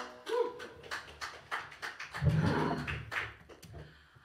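Scattered handclaps from a small audience right after a song ends, with a brief vocal shout about two seconds in.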